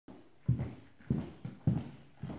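Footsteps on a wooden parquet floor at a steady walking pace, dull thumps a little more than half a second apart.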